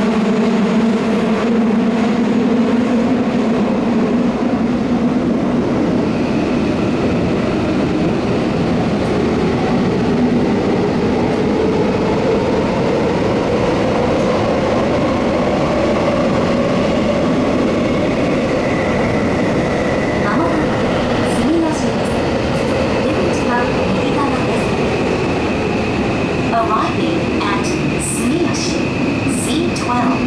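Tokyo Metro 18000 series subway train running, heard from inside the car: a loud, steady rumble of wheels on rail with humming tones that drift slowly up and down in pitch as the speed changes.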